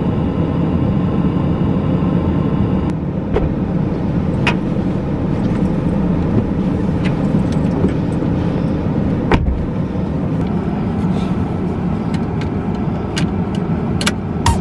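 Car idling, heard from inside the cabin as a steady low rumble, with a few sharp clicks and knocks as the driver gets in and settles into the seat.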